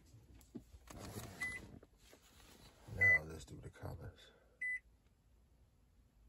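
Car's electronic warning chime beeping at one high pitch about every second and a half, three times, over rustling and handling noise, with a louder knock about halfway.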